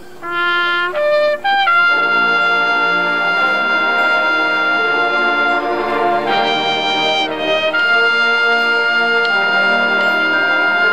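Marching band brass playing: three short single notes climbing in pitch, then the full brass section comes in with loud long-held chords that shift twice.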